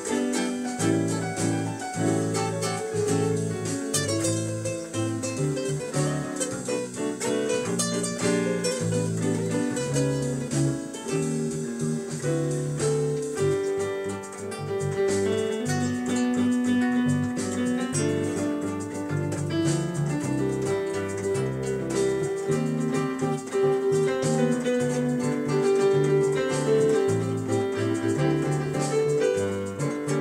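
Instrumental trio of piano, acoustic guitar and electric bass guitar playing a candombe arrangement together, the bass moving under piano chords and plucked guitar.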